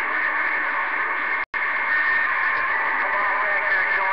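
Galaxy CB radio receiving on an open skip channel: steady, narrow-band static hiss with faint garbled voices buried in it. It cuts out to dead silence for an instant about one and a half seconds in.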